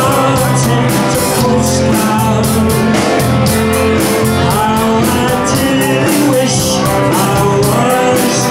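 Live rock band playing: a lead vocal over electric guitar, bass guitar and drums, with a steady cymbal beat and sustained bass notes.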